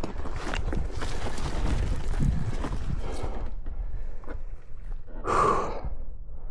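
Dirt bike moving slowly over grassy, bumpy ground: a low rumble with irregular knocks and rustling that thins out about halfway, then a short breathy gust near the end.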